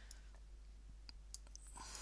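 A few faint, scattered computer mouse clicks over low background hiss.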